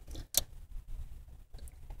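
A single sharp click about a third of a second in, amid faint handling ticks: the electrical part of a 1988 Honda Civic ignition switch being pushed into place in the plastic steering column by hand.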